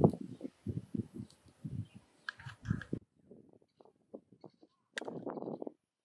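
An animal calling: a string of short, irregular calls for about three seconds, then after a sudden change in background a few faint sounds and one longer call shortly before the end.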